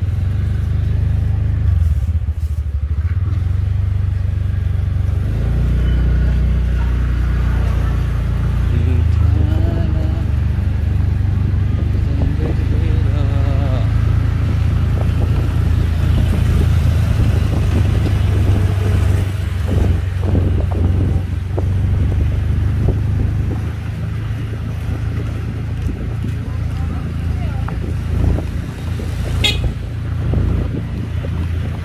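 Motorcycle being ridden along a street: a steady low rumble of engine and wind on the microphone. A brief high tone sounds near the end.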